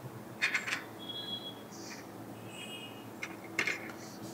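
A metal spoon scraping and clinking against a small serving pan as fried rice is spooned out onto a plate, with a few short clicks and brief ringing clinks.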